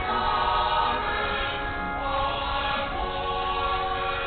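A choir singing slow sacred music, many voices holding long notes together and moving to a new chord about halfway through.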